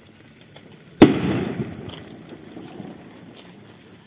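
A single loud firework bang, of the kind of skyrocket set off during a religious pilgrimage, about a second in, its echo rolling away over the next second.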